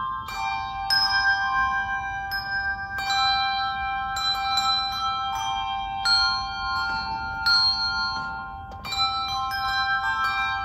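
Handbell choir ringing slow music: chords of bells struck together every second or two and left to ring on, overlapping as they fade.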